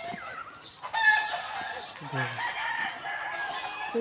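A rooster crowing: one long crow that starts suddenly about a second in and runs on for nearly three seconds.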